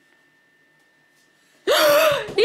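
Hushed room, then near the end a sudden loud, high-pitched playful cry from a voice, the 'found you' moment of a hide-and-seek game.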